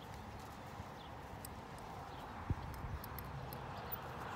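Pony of the Americas mare's hooves walking on arena sand in soft, uneven thuds, with one sharp knock about two and a half seconds in.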